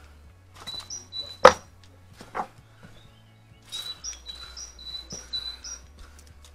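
A small bird singing two runs of short, high, repeated notes in woodland, over scattered knocks and a sharp snap about a second and a half in.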